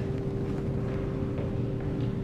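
Room tone: a steady low rumble with a faint, unchanging hum.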